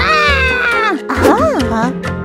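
A wordless, whiny cartoon voice sound: one long falling cry, then a short rising-and-falling one about a second and a half in. Background music plays underneath.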